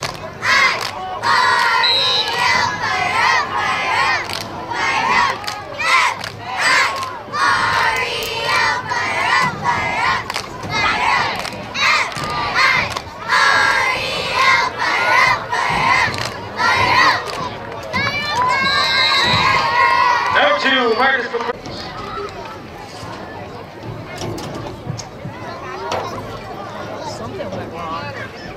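Crowd at a youth football game shouting and cheering during a play, many voices at once, loud for most of the time and dying down over the last few seconds.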